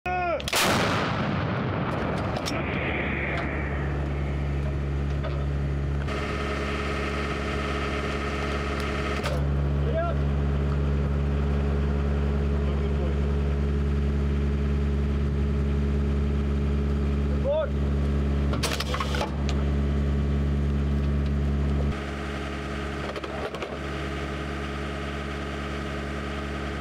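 A 155 mm TRF-1 towed howitzer fires one round right at the start: a single loud blast with a long ringing decay. After it a steady mechanical hum runs on, broken by a brief clatter about nineteen seconds in.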